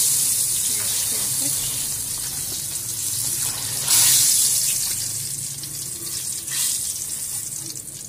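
Battered green chillies deep-frying in hot oil in an aluminium wok: a steady hiss and sizzle that flares up sharply about four seconds in, as a wire skimmer stirs and turns them, then dies down.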